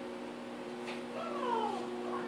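A plastic-sleeved card binder page being turned over a steady hum, with a short falling squeal about a second and a half in.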